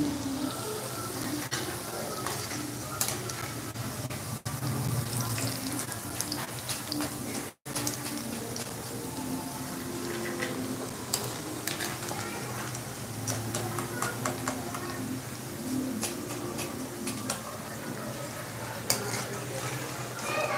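Cauliflower pakoda deep-frying in hot oil in a kadai, sizzling steadily. A wire-mesh skimmer repeatedly scrapes and taps against the pan as the fritters are stirred and lifted out.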